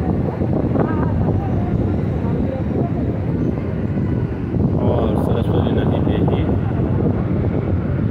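Steady, loud rushing roar of the Saraswati River, a fast glacial torrent pouring through a boulder channel, deep and rumbling in the low end.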